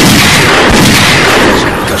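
A dense, loud burst of gunfire with heavy booms, so thick that the separate shots run together, with a couple of sharper cracks about two-thirds of a second and a second in.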